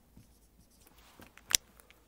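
Dry-erase marker writing on a whiteboard, a faint scratchy stroke sound, with a single sharp click about one and a half seconds in.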